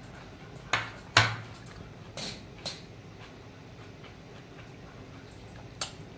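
Someone chewing crisp lettuce close to the microphone: a handful of short, sharp crunches with quiet gaps between them, the loudest about a second in.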